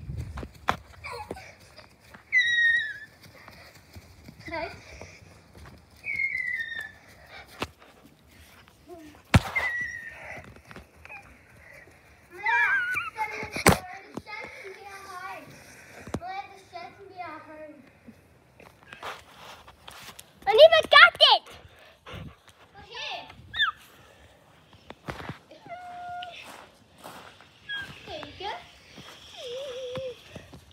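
Young girls' high voices squealing, calling out and laughing while playing, without clear words; the loudest burst of voices comes about twenty seconds in. A few sharp knocks sound in between.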